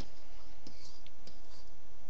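Stylus tapping and scratching on a tablet screen while handwriting, a few faint scattered clicks over a steady low background hum.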